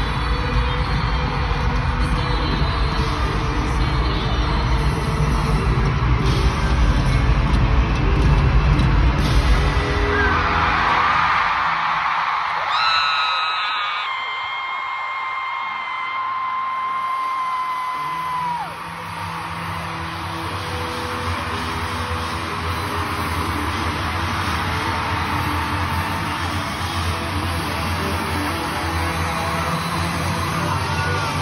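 Live arena concert: a band playing loud through the PA while the crowd yells and cheers. About ten seconds in, the bass drops away and a single high note is held for about eight seconds. The band comes back in soon after.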